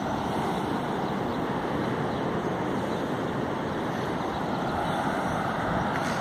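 Steady rushing noise of ocean surf breaking along a sandy beach, even throughout.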